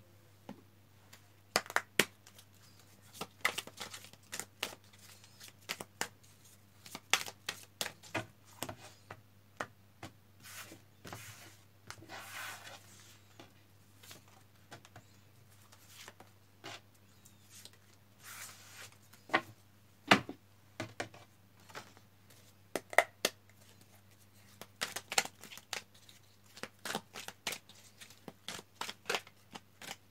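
A large deck of tarot cards being shuffled and handled by hand over a wooden table: irregular crisp snaps and slaps of the card edges, with a couple of longer sliding rustles about 12 and 18 seconds in.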